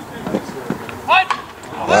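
A short, high-pitched shout with a quickly rising pitch about a second in, from a spectator at the plate appearance, over low outdoor crowd background; a man starts talking right at the end.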